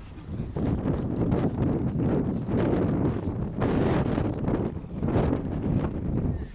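Wind buffeting the microphone: a loud low rumble that swells in gusts several times.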